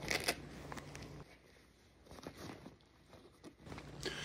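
Faint rustling and scraping of nylon fabric and webbing being handled on a plate carrier, with a few short, sharper scrapes and clicks scattered through.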